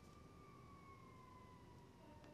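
Near silence, with a faint high tone that slowly falls in pitch.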